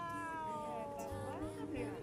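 A female singer holding one long note that slowly slides down in pitch, from the played-back vocal performance.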